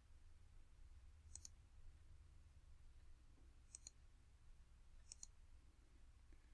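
Faint computer mouse clicks over near silence: three quick press-and-release double clicks, about a second and a half in, near four seconds and about five seconds in.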